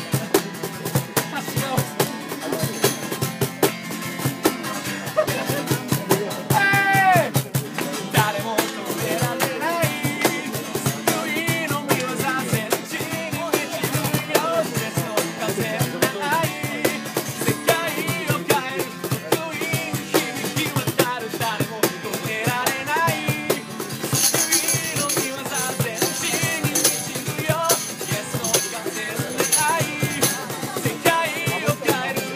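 Live acoustic guitar strummed to a steady beat on a cajón, with a man singing over it.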